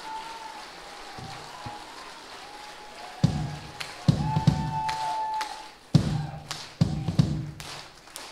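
Live band playing loud accented hits together, bass, kick drum and cymbals struck at once with short pauses between, beginning about three seconds in after a quiet stretch with faint held tones.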